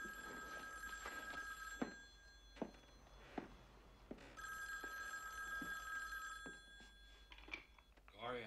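Telephone bell ringing twice, each ring lasting about two seconds with a pause of about two and a half seconds between. A few soft knocks fall between and after the rings.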